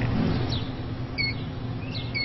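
Outdoor street ambience with a steady low traffic hum, and a few short high electronic beeps from a parking pay station's keypad being pressed, one a little past a second in and more near the end.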